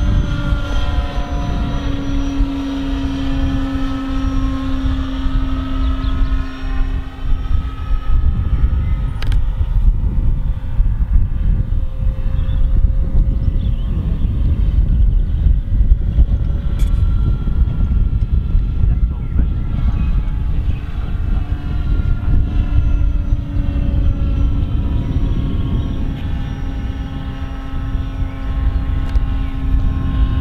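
Electric motor and propeller of a radio-controlled model aircraft flying overhead: a steady, multi-pitched whine whose pitch slowly glides as the plane passes. It fades as the plane flies off around the middle and grows louder again in the last third.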